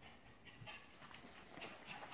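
Faint rustling and light clicks of glossy photo prints being handled and slid across one another as a signed photo is set aside. It is quiet at first, with the handling noises starting about half a second in and growing denser near the end.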